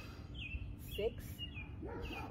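Short, high, falling chirps repeat several times, typical of a songbird calling, while a woman says "six" once about a second in.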